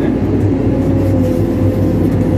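Diesel engine of a CAT backhoe loader running steadily under the cab floor as the machine travels, a deep drone with a steady thin whine over it.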